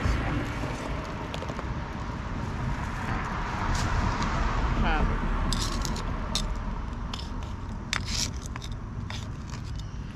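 Metal hand trowel scraping and digging into gritty soil in a cinder-block planting hole: a run of short scrapes and clicks from about halfway through. Under it a steady low rumble and hiss, stronger in the first half.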